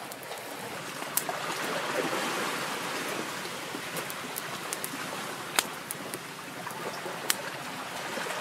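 Wood fire burning with a steady hiss and a few sharp crackling pops, about three in all.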